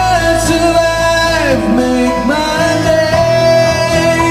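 A male lead singer singing live into a microphone over an unplugged band with guitar, the music running on throughout.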